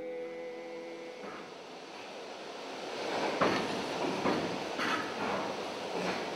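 A held sung note dies away in the first second. Then a rumble of heavy metal machinery builds up, with irregular sharp metallic clanks from about halfway through.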